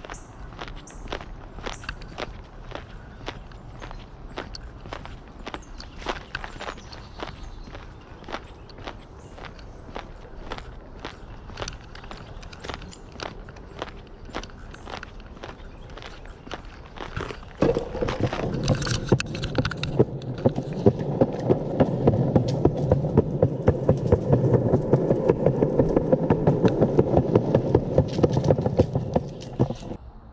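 Footsteps on a paved path at a steady walking pace, about two steps a second. A little over halfway through, a much louder, denser noise with rapid ticking takes over and runs until just before the end.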